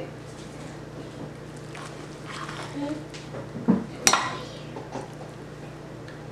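Metal serving spoon scooping soft pot pie filling and clinking against a dish: a few faint scrapes and taps, then one sharp clink about four seconds in.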